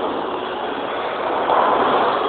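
Steady rumbling din of a bowling alley: balls rolling on the lanes and machinery running, swelling louder about one and a half seconds in.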